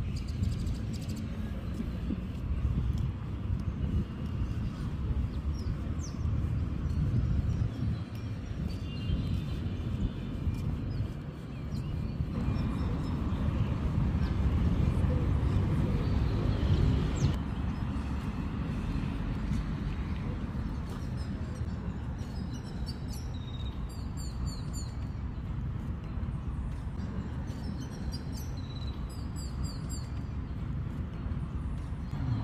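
Outdoor park ambience: a steady low rumble that swells for a few seconds near the middle, with small birds chirping repeatedly through the last third.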